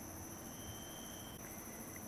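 Night insects trilling steadily in a continuous high-pitched chorus. A fainter, lower thin tone sounds for about a second in the middle.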